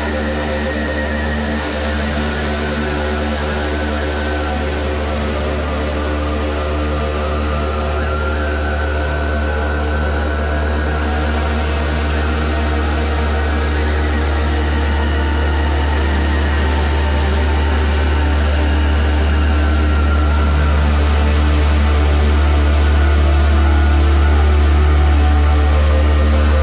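Downtempo psychill electronic music: a deep, steady bass under layered sustained synth tones, slowly growing louder.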